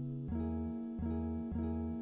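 Background music: an acoustic guitar playing plucked chords that change every half second or so.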